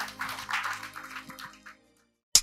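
Audience applause over a soft background music bed, both fading out to silence near the end.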